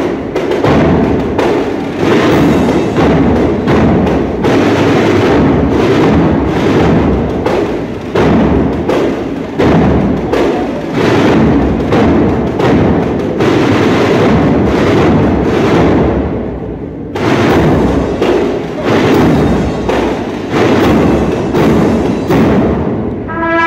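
The drum section of a Spanish Holy Week brass-and-drum band plays a dense march rhythm, with a short lull about sixteen seconds in before the drumming picks up again.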